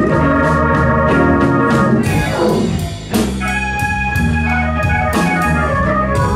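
Live blues band playing, with sustained organ chords in front over drums, bass and electric guitar. Just before three seconds in the sound dips with a falling slide in pitch, then a new chord comes in with a drum strike.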